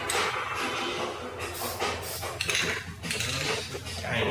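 Aerosol spray paint can hissing in several short bursts, with some clinking of cans and plastic caps.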